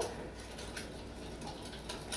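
A wire whisk stirring liquid flan custard in a glass mixing bowl, faint quick ticks of the metal against the glass.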